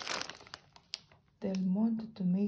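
Plastic food packaging crinkling as it is handled, in short rustles and clicks, then dying down. A voice starts speaking near the end.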